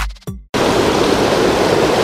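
A hip-hop beat with deep bass and sharp drum hits cuts off abruptly about half a second in. It gives way to the loud, steady rush of a fast river running over rocks.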